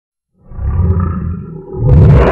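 Lion roar sound effect: a low, rumbling roar starting about half a second in, then a sudden louder hit with a bright crash just before the end as a second roar swells.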